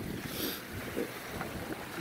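Wind on the microphone: an uneven low rumble of noise with no distinct events.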